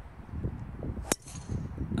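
A golf driver striking a ball off the tee: one sharp crack about a second in.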